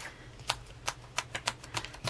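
A run of about seven light, irregular clicks as a paper page is pressed and snapped onto the discs of a discbound planner.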